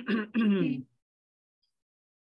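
A man's voice ends a sentence in Spanish, falling in pitch, then cuts to dead silence about a second in.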